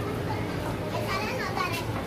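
Children playing and calling out, with high voices rising and falling about a second in.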